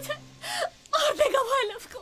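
A woman sobbing and wailing in distress, her voice rising and falling in pitch in short broken cries.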